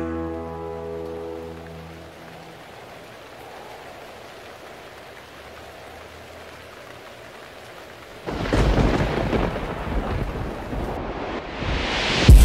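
The last held chord of the song fades out over the first two seconds, leaving a steady soft hiss. About eight seconds in, a sudden loud, deep rumble like thunder sets in and carries on.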